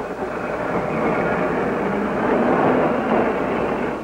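Streetcar rumbling past, a dense steady noise that swells towards the end.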